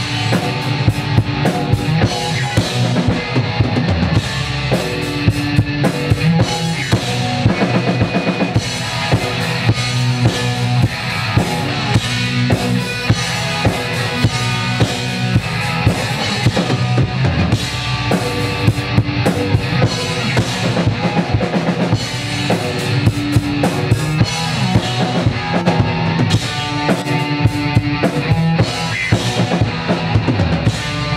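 Live band playing: a Gretsch drum kit, with bass drum, snare and cymbals, keeps a steady driving beat under an electric guitar.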